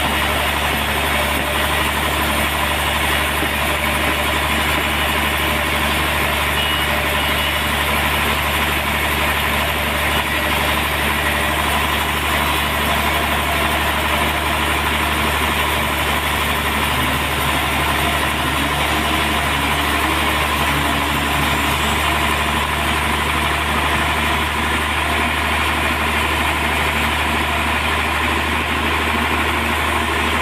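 Large vertical band sawmill running at a steady pitch and level while it saws slabs from a trembesi (rain tree) log.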